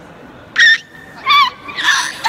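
A girl's shrieking laughter: two loud, very high-pitched squeals under a second apart, the second lower and wavering, then more laughing near the end.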